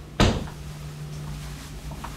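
A linen-closet door being pushed shut: one sharp knock as it closes, dying away quickly.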